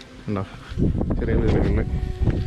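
Wind buffeting the camera microphone, a loud, irregular low rumble that sets in just under a second in.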